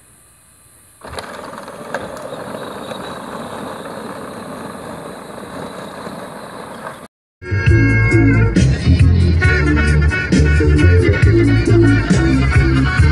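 A child's battery-powered ride-on buggy driving on asphalt: a steady whirr of motor, gears and hard plastic wheels on the road, starting about a second in. It cuts off suddenly, and loud music with a heavy beat takes over.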